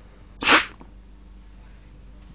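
A single short, forceful puff of breath blown into a paper pistol to shoot its paper bullet, about half a second in.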